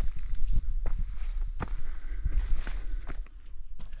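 Hiker's footsteps on a dirt forest trail, moving forward slowly: a run of irregular soft steps and crunches over a low rumble.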